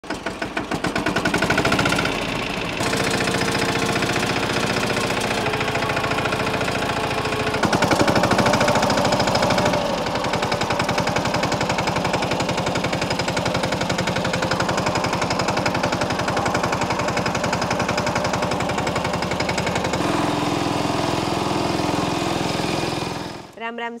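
Mahindra Yuvraj 215 NXT mini tractor's 15 hp single-cylinder diesel engine running with a rapid, even chugging. The sound changes abruptly several times, as if cut between shots.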